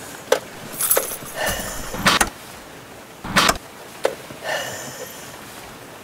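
Car keys rattling in the ignition while the car is tried in short, separate attempts: a few clicks and two brief bursts, about two and three and a half seconds in. The engine does not catch and the car fails to start.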